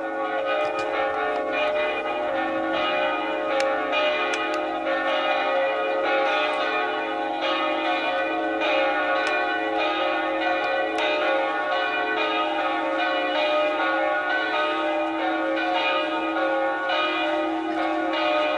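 Church bells pealing: several bells struck one after another, with overlapping strikes whose tones ring on continuously.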